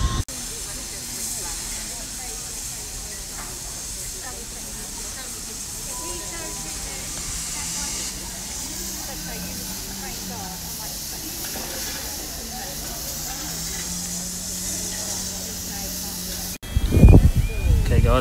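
Standing steam locomotives, LMS Royal Scot class 46100 and BR Britannia class 70000, hissing steam steadily while stopped. The hiss cuts off abruptly near the end.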